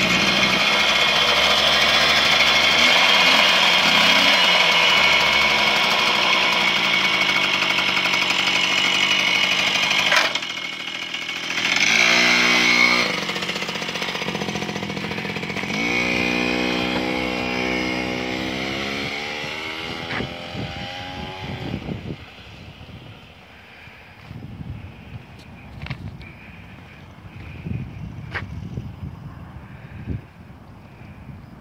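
1987 Trac Sprint moped's Daelim DP50 two-stroke engine running loud and revving close by for about ten seconds, with a short rev about twelve seconds in. Then the moped pulls away, its pitch rising as it accelerates, and fades into the distance after about 22 seconds.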